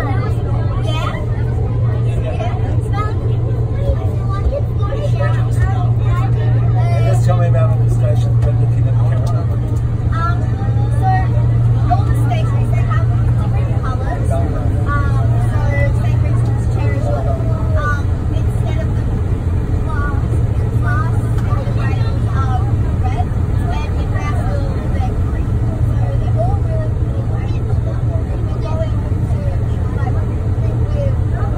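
Sydney Metro train running through a tunnel: a steady, loud low drone from the train and its wheels on the rails, with indistinct passenger chatter over it.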